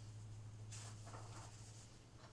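Faint rustling and scraping as things on top of an upright piano are handled, about a second in, over a steady low hum.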